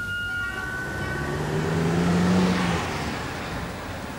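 A car driving past on a street: its engine and tyre noise build to a peak about halfway through and then fade away.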